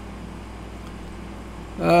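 A pause with only a steady faint hiss and low hum of room tone, then a man's voice starting to speak near the end.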